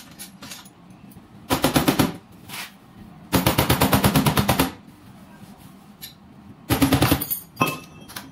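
Body hammer rapidly tapping the sheet-metal edge of a Mazda 6 trunk lid, about ten light blows a second, working a dent down. The taps come in three runs: a short one about one and a half seconds in, the longest just past the middle, and another near the end, with a couple of single knocks between.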